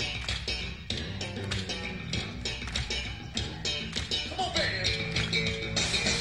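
Live funk band playing from a soundboard mix: drums keep a steady beat with regular hi-hat strikes under bass and electric guitar. About four and a half seconds in a note glides downward, and just before the end the band turns louder and brighter.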